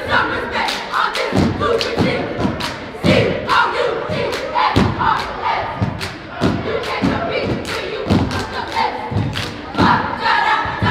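A cheerleading squad stomps in unison on a wooden gym floor, about two stomps a second, with claps. A group of girls' voices shouts a chant together over the stomps.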